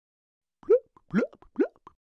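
Three short pop sounds, each sliding quickly upward in pitch, about half a second apart: a cartoon transition sound effect.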